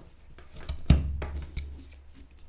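Carving knife cutting into a block of Ficus benjamina wood: a few short slicing strokes, the loudest a sharp cut about a second in.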